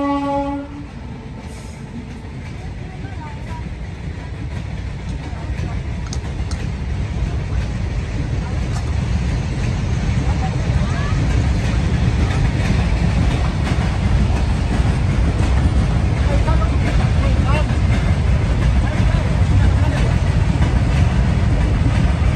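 A locomotive horn cuts off in the first second, then a train's rumble builds steadily over about ten seconds and stays loud to the end.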